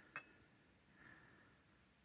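Near silence: room tone, with one faint short click just after the start.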